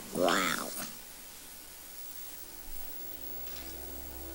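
A young girl's short, amazed vocal exclamation whose pitch swoops up and back down, lasting under a second.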